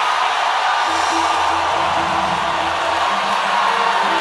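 Music playing under the loud, steady noise of a large congregation, with held bass notes beneath a dense wash of many voices.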